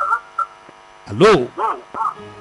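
Steady electrical mains hum on a telephone line, broken by a short voice call of "allo?" about a second in.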